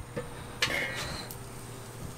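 Lid of a Weber charcoal kettle grill lifted off, with a brief metallic clink and scrape a little over half a second in.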